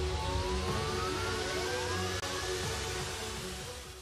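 Dramatic background music: a low rumbling drone with a single tone gliding slowly upward and a second, shorter rising tone about two seconds in, fading out at the end.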